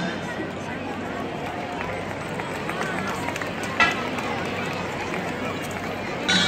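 Spectator crowd murmuring in a break in the dance music, which stops right at the start. One sharp knock sounds a little under four seconds in.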